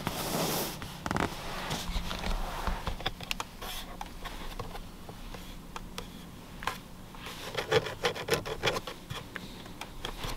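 A hand rubbing and pressing on the leather upholstery of a 2022 Lexus ES 350's rear seat, then fingers pushing and tapping the plastic rear climate vent panel and its controls, giving a string of small clicks and taps, busiest about eight seconds in. The trim is being pressed to test it for creaks and rattles.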